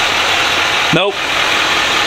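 A steady, loud rushing hiss, broken briefly by a spoken 'nope' about a second in.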